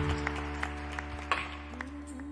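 Stage keyboard playing slow, held chords as the opening of a song, with light short clicks over them. Near the end a voice comes in on a held, slightly wavering note.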